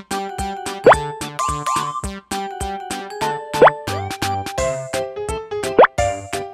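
Bouncy children's background music, broken three times by a quick rising 'bloop' sound effect; these bloops are the loudest sounds.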